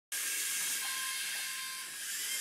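Many LEGO Mindstorms EV3 robots' electric drive motors running at once, a steady high-pitched whirring hiss with a few faint whining tones in it.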